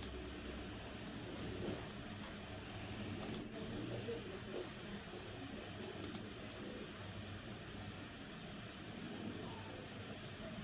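Low steady room hiss with three sharp clicks from computer use, about three seconds apart.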